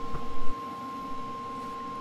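A powered-up Lincoln PowerMig 210MP inverter welder sitting idle with no arc, giving off a steady high electrical whine made of two tones. A short low thump comes about half a second in.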